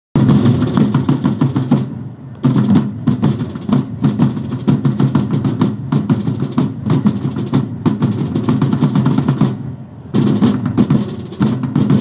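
Drum corps playing a fast, rolling snare-drum beat, with two brief let-ups, one about two seconds in and one near ten seconds.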